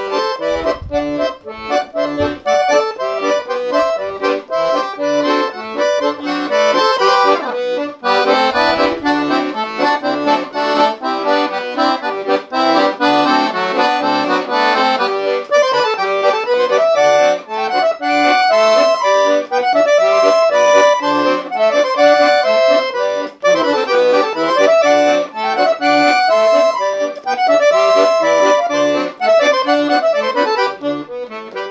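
Leticce piano accordion playing a slow contrapasso tune: a right-hand melody on the keyboard over left-hand bass and chord buttons.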